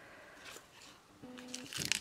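Faint handling noise: a small plastic zip-lock bag of rhinestones is picked up and rustles softly near the end, after a short hummed sound from the crafter.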